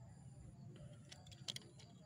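Near silence with a low outdoor rumble and a few faint, sharp plastic clicks, the clearest about one and a half seconds in, as toy monster trucks are handled and set onto a plastic toy car-carrier trailer.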